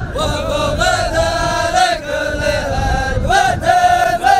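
A group of men chanting together in the Dhofari hbout, held notes sung in unison in short repeated phrases over crowd noise.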